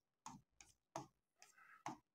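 Faint clicks of a pen tip tapping a touchscreen display as short tick marks are drawn, about six irregular ticks in two seconds.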